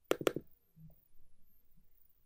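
A quick burst of several sharp clicks from computer input at the desk, during a login. Then faint room noise.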